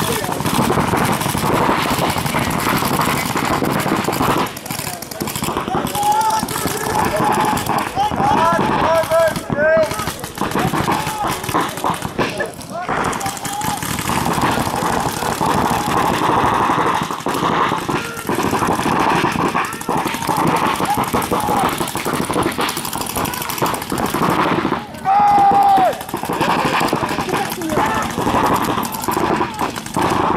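Paintball markers firing in rapid strings, many shots overlapping, mixed with players and spectators shouting. A loud shouted call stands out about three-quarters of the way through.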